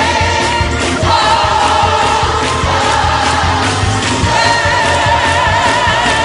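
Mass gospel choir singing, holding long chords that change about every one to two seconds, over a steady low bass accompaniment.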